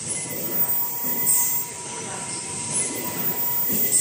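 Richpeace automatic pillow case sewing machine running, a mechanical clatter with a faint steady whine. Two short hisses come through, about a second in and near the end.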